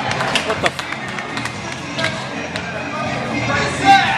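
Wrestler's entrance music playing in a hall, with crowd voices and scattered sharp claps.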